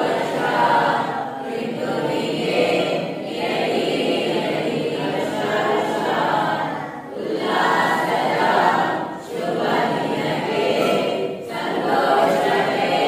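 A group of children singing a prayer together, with short breaks between lines.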